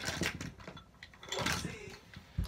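A few soft clicks and handling knocks of small objects, near the start and again about a second and a half in, with a brief low murmur of voice.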